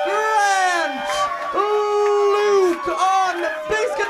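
A man's voice calling out a name in a long, drawn-out announcer's style, the vowels stretched and sliding in pitch, one note held steady for about a second in the middle.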